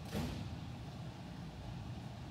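Steady low rumble of background noise in a large, echoing hall, with one brief sharp sound just after the start.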